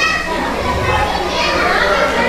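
Many voices at once from the guests, children's voices among them, talking and calling out without a break.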